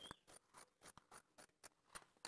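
Tailoring shears snipping through blouse fabric along a neckline, a quick run of faint cutting snips.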